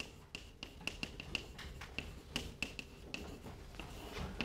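Chalk writing on a blackboard: a faint, irregular run of sharp chalk taps and clicks as letters are written.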